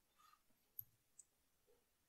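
Near silence: room tone, with a couple of faint short clicks about a second in.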